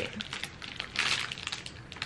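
Clear plastic packaging crinkling in short, irregular crackles as the headbands wrapped in it are handled and turned over.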